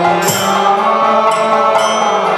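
Devotional kirtan music: a harmonium holds sustained chords under chanting, with bright hand-cymbal strikes and drums keeping time.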